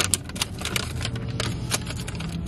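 Paper fast-food bag crinkling as it is handled, an irregular run of small crackles, over a low steady hum.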